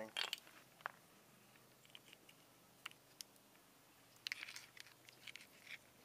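Faint, scattered small clicks and scrapes of a transmission barrel solenoid and a test lead being handled at a car battery's terminals, with a short cluster of them about four seconds in.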